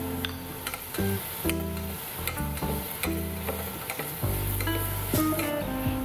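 Chopped onion sizzling as it sautés in melted butter in a stainless steel saucepan, with a few light clicks. Background music with held notes plays over it.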